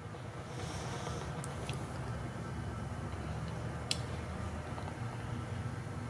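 Ford 460 cubic-inch big-block V8 idling steadily with a low, even rumble, breathing through two-chamber Flowmaster mufflers. A few faint clicks are heard over it.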